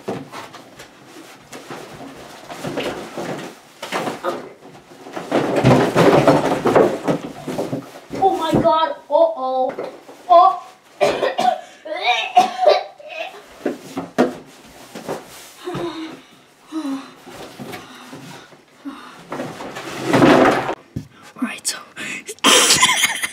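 A boy's voice mumbling, laughing and coughing, with the cardboard of a large shipping box rustling and bumping as he climbs into it.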